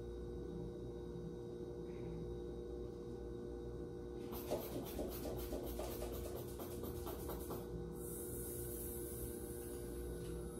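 Blood pressure cuff being pumped up with a rubber hand bulb: a quick run of squeezes for about three seconds, then air hissing out through the release valve as the cuff deflates near the end. A steady electrical hum sits underneath.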